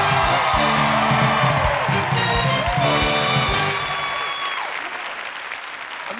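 Studio audience applauding over a short music cue from a band. The cue has low held chords and several sharp drum hits in the first few seconds, and the applause and music fade away over the second half.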